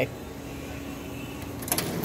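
A faint steady hum, then near the end a short clattering rattle as a cash register drawer is pulled open, its coins shifting in the tray.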